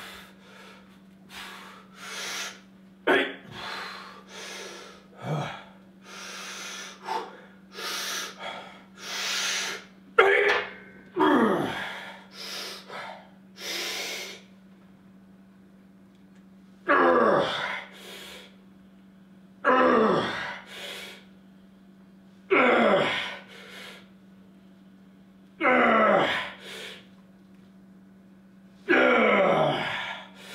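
A man's heavy breathing under a 225-pound barbell bench press: short, sharp breaths as he braces, then from about halfway in a loud grunting exhale that falls in pitch roughly every three seconds as he pushes up each slow rep. A steady low hum runs underneath.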